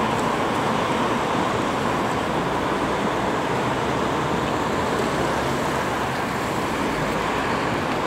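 Steady, even rushing background noise with no distinct events, of the kind of road traffic.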